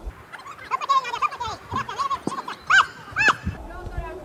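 High-pitched voices shouting short calls one after another across an open pitch, the two loudest shouts coming about three seconds in.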